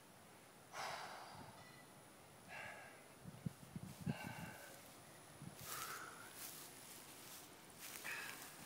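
A man breathing hard through a plank hold: about four forceful, breathy exhales spaced a second or more apart, the strained breathing of core-muscle fatigue under an isometric hold. Faint, with a few soft low knocks around the middle.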